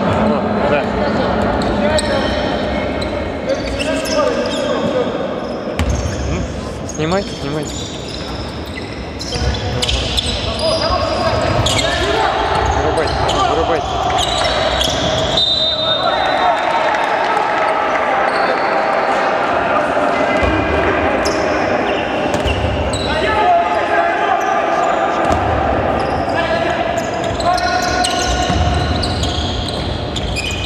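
A basketball being dribbled and bounced on a hardwood gym floor during play, a run of repeated thuds throughout. The sound echoes in a large sports hall.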